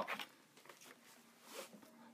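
Quiet room tone with a faint, brief rustle about one and a half seconds in.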